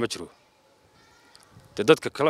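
A man speaking Somali stops after a fraction of a second and pauses for well over a second, then starts again near the end. During the pause there is only a faint, thin, high sound.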